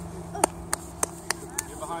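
Five sharp hand claps at an even pace, about three a second, over a steady low hum.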